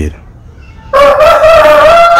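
A man's loud, long, drawn-out vocal cry at a high pitch, held steady and starting about a second in after a short pause.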